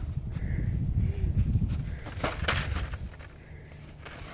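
Wind buffeting the microphone in a low, uneven rumble, with a couple of soft knocks about two and a half seconds in.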